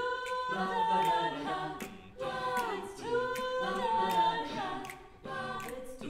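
Jazz a cappella group singing: a female soloist over a mixed group of backing voices holding and shifting chords, with sharp clicks about twice a second keeping the beat.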